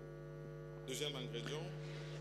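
A steady electrical hum, one low tone with a ladder of fainter overtones above it, heard during a pause in speech.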